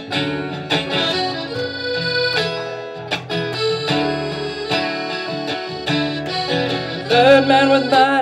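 Acoustic guitar strumming over upright bass, with a harmonica playing an instrumental break. Near the end the harmonica comes up loud with wavering, bent notes.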